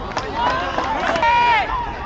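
Men's voices shouting across a football pitch during play, several calling over one another, with one long shouted call about a second in.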